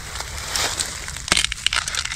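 Dry bamboo canes and dry bamboo-leaf litter crackling and snapping as they are gripped and pulled. There is one sharp crack about a second and a half in, followed by a quick run of crackles.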